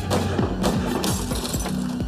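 Dramatic background music with two sharp cracking hits, sound-effect pistol shots in a reenacted shooting: one right at the start and another about half a second later.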